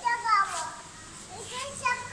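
A young child's high-pitched voice calling out without clear words, in two short bursts: one at the start and one near the end.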